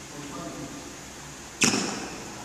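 A single sharp crack of a badminton racket striking a shuttlecock about one and a half seconds in, with a short echo.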